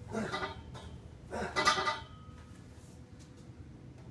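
Two short strained groans of effort from a man pushing down on a hand conduit bender to finish a 90-degree bend. The second groan is louder and longer, about a second and a half in.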